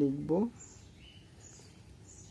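Faint bird chirps in the background, a few short high calls about half a second apart.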